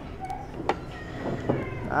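Wooden chopsticks clicking against a ceramic plate, two sharp clicks under a second apart, then a man's voice begins at the very end.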